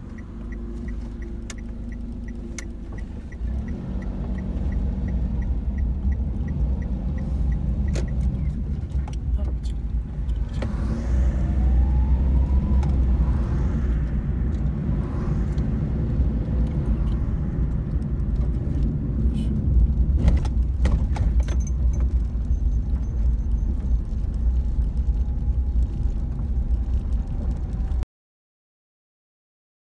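Car interior sound while driving: a steady low engine and road rumble that grows louder over the first few seconds as the car picks up speed. A light, quick, regular ticking sounds during the first few seconds.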